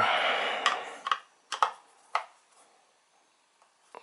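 A brief rustle of handling, then four sharp clicks as a cross-head screwdriver's tip is set into a screw on the subwoofer's back panel.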